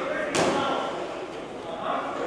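A single sharp smack of a boxing glove landing a punch, about a third of a second in, with a short echo from the hall, over voices.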